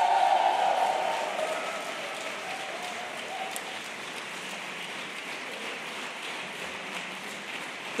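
Audience applauding, loudest at the start and then easing to steady clapping.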